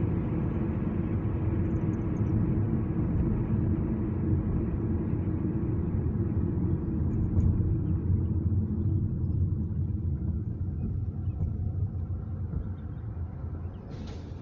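Steady road and engine rumble heard inside a car's cabin while driving, growing quieter over the last few seconds.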